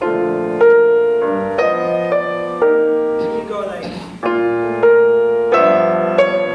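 Grand piano playing a string of sustained chords, a new chord struck about every half second, with a short break a little past the middle.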